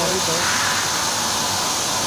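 Plasma torch of a CNC plasma cutting table cutting steel plate: a steady hiss of the arc and its cutting air, unbroken throughout.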